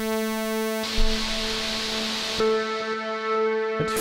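Bitwig Polysynth holding one sustained note while the ParSeq-8 step sequencer switches its timbre in steps, from bright and buzzy to a hissy, noisy tone and back, about every second or so. The seventh step drives the pitch so fast that it is heard only a little.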